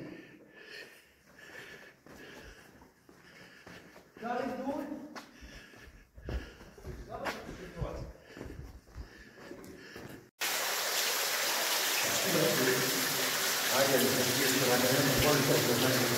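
Faint steps and distant men's voices echoing in a stone quarry tunnel, then, about ten seconds in, a steady rush of water from a small underground cascade pouring down the quarry wall starts suddenly and runs on, with voices under it.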